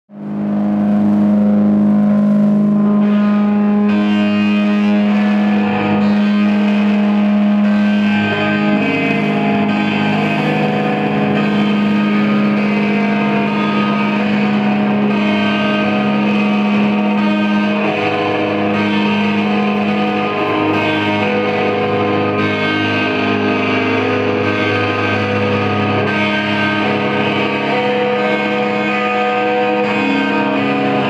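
Live post-hardcore band playing an instrumental opening on distorted electric guitars and bass, holding long droning chords. The sound fades in from silence at the very start.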